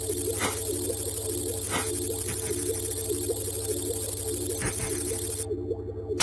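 Electronic intro sound effect: a steady synthesized drone of several held tones with a hiss above it and a few scattered clicks. The hiss drops away near the end.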